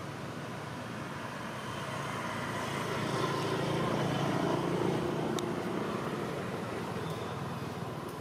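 A motor vehicle going by, its engine hum growing louder to a peak about five seconds in and then fading.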